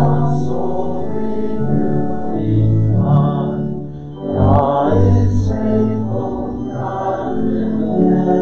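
Congregation singing a hymn with instrumental accompaniment, in long held notes.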